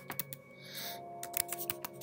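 Computer keyboard keystrokes: a quick run of key clicks as a short search is typed.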